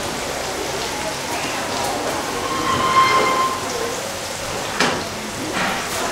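Food frying in a saucepan on a gas hob: a steady sizzle. A short steady tone sounds about halfway through, and there is a single knock near the end.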